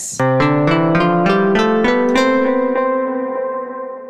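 Keyboard playing in C major: a quick run of notes, about five a second, that builds into a held chord which rings and slowly fades.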